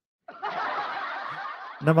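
A man's breathy, unvoiced sound into a close microphone: about a second and a half of steady air noise that stops as he starts speaking again.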